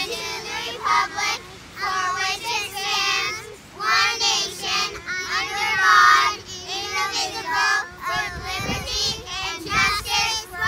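A high-pitched voice singing, child-like in pitch, in a run of short, gliding phrases.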